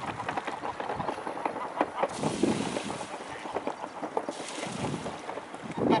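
Outdoor riverbank sound: wind on the microphone, with two gusts of hiss about two and four and a half seconds in, and scattered soft knocks. Ducks begin quacking at the very end.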